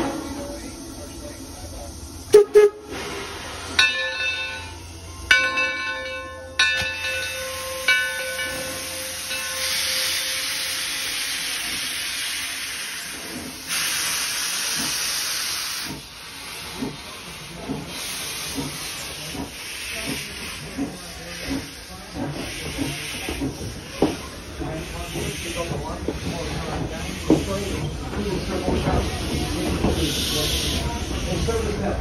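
Torch Lake, an 0-6-4T Mason Bogie steam locomotive, starts its train: a sharp clank about two seconds in, then its steam whistle blows several short blasts. Steam hisses loudly for several seconds, and then the wheels click and knock as the coaches roll past.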